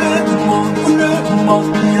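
Afro house track playing: sustained chords under a melodic lead line that slides between notes.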